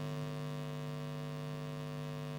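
Steady electrical mains hum: a low, constant buzz with a stack of fainter, evenly spaced overtones above it, and nothing else.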